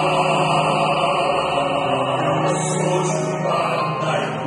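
Male voices singing a Korean art song in harmony, holding long sustained notes together.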